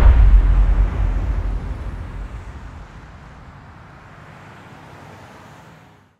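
A deep low rumble that fades away over about three seconds, leaving a faint hiss that cuts off just before the end.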